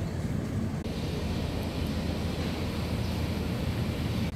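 Wind buffeting the microphone: an uneven low rumble over steady outdoor background noise, with a brighter hiss joining about a second in.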